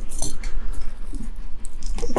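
Fireclay bricks being set by hand onto a dry-laid wall without mortar: a few light clinks and scrapes of brick on brick over a steady low hum.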